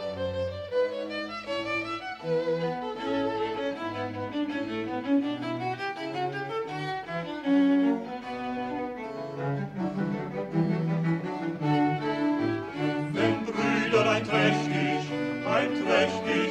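Baroque string ensemble of violin and viols da gamba over continuo, playing an instrumental passage of a vocal concerto. Singing voices seem to come back in near the end.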